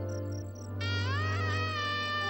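Background music score: a steady low drone under rhythmic high chirping at about seven a second. The chirping stops under a second in, as a wind instrument enters with rising, sliding notes and then holds them.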